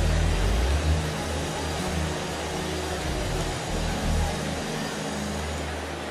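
Sustained keyboard chords with held low bass notes under a steady wash of many voices praying aloud together.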